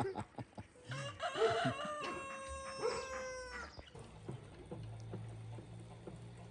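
A rooster crowing once, one long drawn-out crow of about three seconds that drops in pitch at the end.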